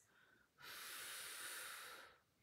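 A soft, long breath out from a woman working through a Pilates reformer exercise. It starts about half a second in and lasts just over a second.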